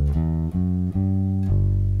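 Fender electric bass playing a quick run of single plucked notes through the G major scale, then a last note held and left ringing from about one and a half seconds in.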